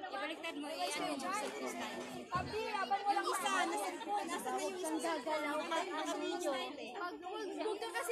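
Several people talking at once: overlapping voices in busy chatter, none of it clear enough to make out.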